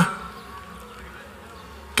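A faint, steady buzzing hum in a pause between a man's spoken phrases.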